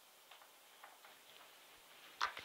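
Near silence: quiet room tone with a few faint, light ticks about half a second apart.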